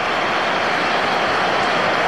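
Steady crowd noise from a football stadium: an even wash of many voices with no single sound standing out.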